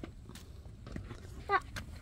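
A toddler's shoes stepping up brick steps: a few faint, light footfalls.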